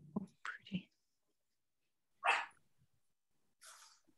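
Quiet video-call audio with a few faint mouth sounds, then one short breathy murmur or whisper about two seconds in.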